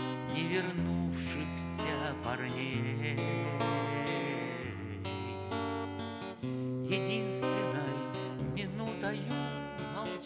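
Acoustic guitar strummed in a steady chord progression, its bass notes changing every second or two: an instrumental passage between sung lines of a bard song.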